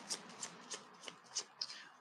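Faint, soft flicks and clicks of a deck of cards being shuffled and handled, several light snaps over the two seconds.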